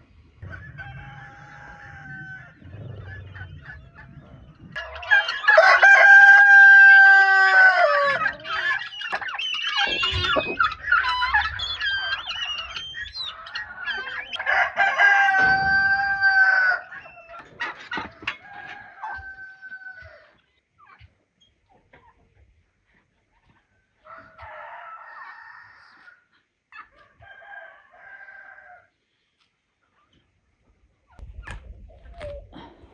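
Roosters crowing, with two long, loud crows about five and fourteen seconds in, each ending in a falling tail. Fainter crows and hens clucking come between and after.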